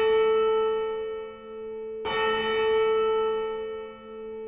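A deep bell tolling: a stroke already ringing at the start fades out, and a second stroke comes about two seconds in, ringing one steady note that fades in the same way.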